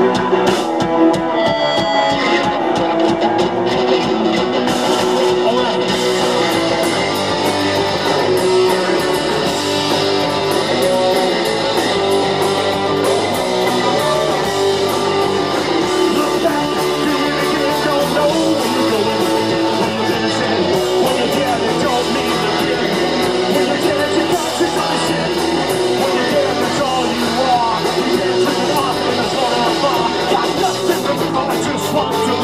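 Live rock band playing loud and without a break: electric guitars over a drum kit.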